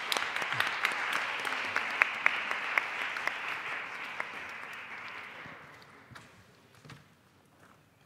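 Audience applauding, with a few sharper individual claps standing out, dying away about six seconds in.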